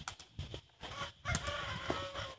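A rooster crowing once, a call of about a second that starts past halfway and trails off falling, over sharp smacks of a takraw ball being kicked.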